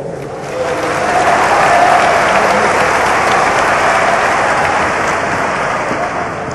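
Audience applauding: the clapping swells about half a second in, holds steady, and dies away near the end.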